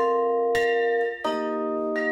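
Tuned percussion music: marimba chords with a large hand bell ringing, a new chord struck about every two-thirds of a second and each left to ring on.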